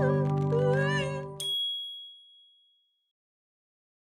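Sustained soundtrack music with a wavering voice over it cuts off about a second and a half in. A single bright chime ding takes its place, rings and fades away over about a second and a half.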